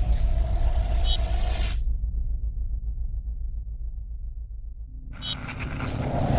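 Logo-sting sound design for an animated news-channel logo: a deep, steady rumble under short, bright chiming tones. About two seconds in, the high end drops away and only the low rumble is left; near the end a whoosh swells back in and builds.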